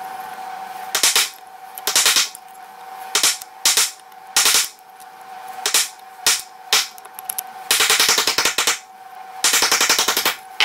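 A steel pick scraping and scratching in the rusty cast-iron frog of an old hand plane, in short sharp strokes. Near the end come two longer runs of fast, rattling scrapes.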